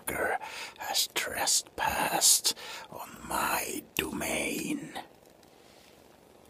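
A man whispering close to the microphone. It stops about five seconds in.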